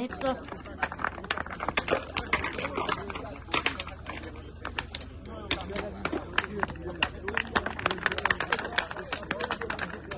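Hand tools digging into stony ground, making rapid, irregular clinks and knocks of metal on rock and gravel, with voices talking in the background.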